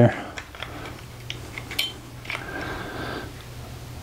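Light clicks and knocks from handling a Makita cordless jigsaw and its blade clamp, with a brief scraping sound a little past the middle. A low steady hum runs underneath.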